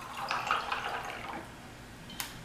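Water pouring from a glass gallon jug into a glass jar of ice cubes. It fades out after about a second and a half as the pour stops.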